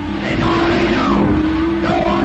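Dramatic soundtrack music with a steady low drone, and short swooping sounds rising and falling over it several times.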